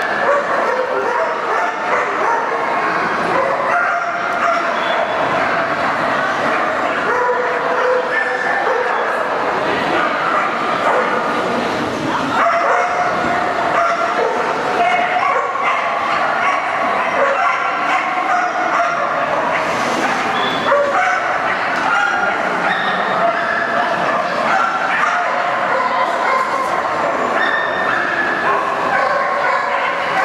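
Dogs barking and yipping over and over, many short barks overlapping, with voices underneath.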